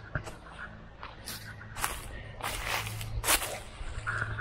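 Footsteps crunching through dry fallen leaves, several noisy steps in the second half.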